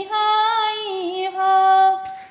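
A woman singing an Awadhi sohar folk song in a high voice, drawing out long held notes with a brief dip in pitch about a second in.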